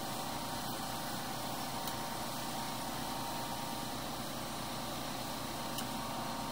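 Steady machine hum with hiss, unchanging in level throughout.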